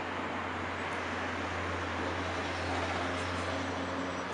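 Steady outdoor traffic rumble: an even wash of noise with a constant low hum underneath.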